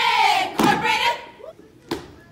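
A group of women shouting a chant in unison, the held voices sliding down in pitch and breaking off about halfway in. Near the end comes a single sharp smack on the wooden floor.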